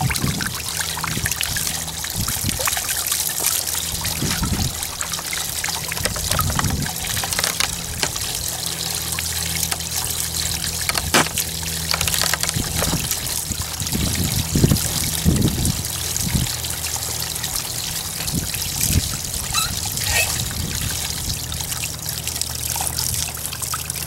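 Evinrude 25 two-stroke outboard running steadily at idle, with cooling water trickling and splashing throughout. It is running without a thermostat, so cooling water flows freely through the head. There are a few light knocks.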